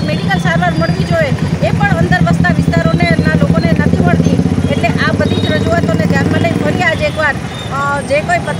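A woman talking over the steady drone of a motor-vehicle engine running close by. The engine sound fades out about seven seconds in.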